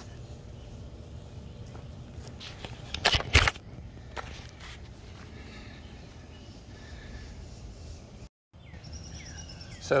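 Steady low outdoor background noise with a short cluster of sharp handling knocks and rustles about three seconds in, then a few lighter ticks. The sound cuts out completely for a moment near the end.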